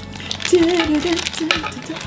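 Crinkling of a small foil blind-bag packet being handled and torn open, with a voice humming a low wavering note over it from about a quarter of the way in.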